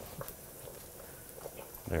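A few faint, light clicks of a wire whisk knocking against a stainless steel stockpot as a garlic clove caught in the whisk is shaken loose.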